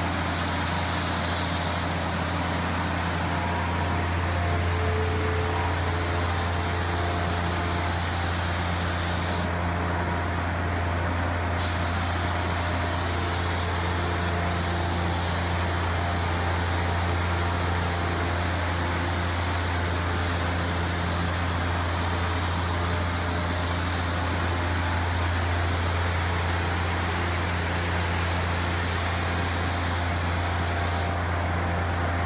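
Compressed-air spray gun hissing as tinted shading color is sprayed onto a cherry tabletop. The hiss cuts out for about two seconds roughly a third of the way in, then resumes, over a steady low hum of machinery.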